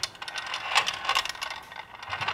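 Small steel balls rolling and clicking against the plastic walls of a handheld ball-in-maze puzzle as it is tilted, a quick irregular run of light ticks as the balls are steered toward the centre.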